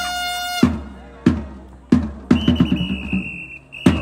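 Cheering music in a baseball stadium: a brass phrase ends about half a second in, then drum beats come about every two-thirds of a second, with a high steady tone held through the second half.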